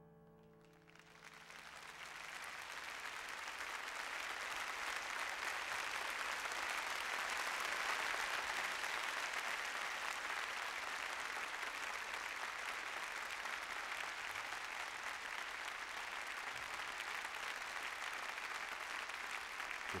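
Audience applause swelling up about a second in as the piano's last notes die away, then holding steady.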